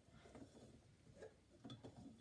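Near silence, with a few faint clicks and taps as a cylinder record is handled and slid off a cylinder phonograph's mandrel.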